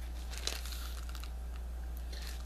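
Crinkling and rustling of a small package of pipe tobacco handled by hand, with a sharper click about half a second in, over a steady low hum.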